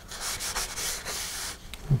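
Hand rubbing and wiping on a stiff, CA-glue-soaked paper transition shroud, a dry scuffing that fades out about a second and a half in, followed by a light click.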